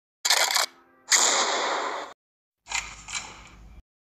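Three sharp bursts of noise in a row, each stopping abruptly. The first is short, the second lasts about a second and fades away, and the third is fainter, with a low rumble beneath it.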